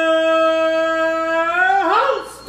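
A voice singing one long, steady held note that wavers and bends in pitch near the end.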